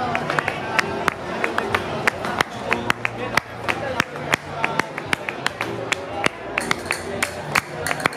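Castanets clicking in quick, uneven strikes and rolls, a few times a second, played by a flamenco dancer over music.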